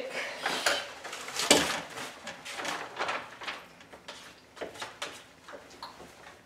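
Handling noise: a scatter of light knocks, clicks and rustles from objects being picked up and set down, the sharpest knock about a second and a half in, growing sparser toward the end.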